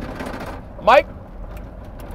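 Engine and road noise inside a moving vehicle's cabin, with one short, loud vocal exclamation rising in pitch about a second in.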